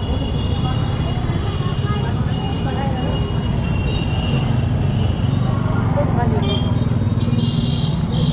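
Busy street traffic: motorcycles and rickshaws running past with a constant low rumble, and people talking among the crowd.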